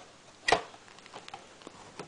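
Plastic DVD cases clacking once, sharply, as a stack of them is handled, followed by a few faint ticks.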